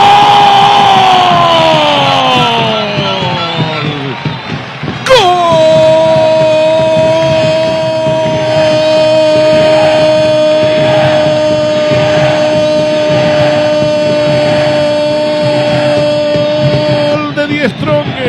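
A Spanish-language football commentator's drawn-out goal cry, 'goooool', with two long held notes. The first slides down in pitch and fades out about four seconds in. After a breath the second is held for about twelve seconds at a steady, slightly sinking pitch.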